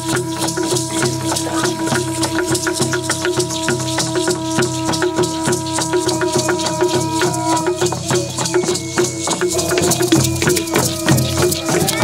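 Music of shaken hand rattles, a fast, dense rattling, over a steady held tone that stops about seven and a half seconds in.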